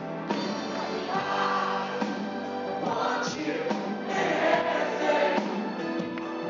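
Live pop-rock band with singing: keyboards, bass guitar and drums under lead and harmony vocals, heard from the audience.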